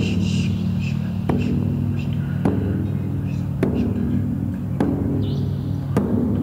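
Dark ritual-style background music: a steady low drone with a deep drum hit about every 1.2 seconds, each hit ringing on, and faint whispering over it.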